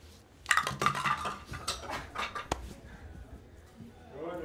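Clatter of small hard objects being handled on a table: a quick run of clicks and knocks starting about half a second in, then scattered clicks with one sharp click about two and a half seconds in.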